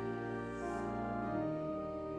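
Pipe organ playing slow, sustained chords, with a change of chord about one and a half seconds in.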